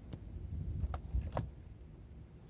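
Handling noise at the nose of a foam RC plane: a few light clicks about half a second apart around the middle as the LiPo flight battery and its lead are handled, over a low steady background rumble.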